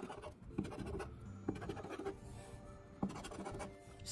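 A large coin scraping the coating off a paper scratch-off lottery ticket in a series of short strokes.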